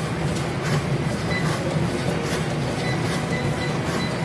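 Treadmill running at speed: a steady motor and belt hum with the rhythmic thud of running footfalls on the deck, about two or three a second.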